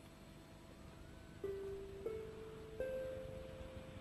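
Soft background music from the cartoon's soundtrack. After a quiet start, three single held notes come in about a second and a half in, each a step higher than the one before.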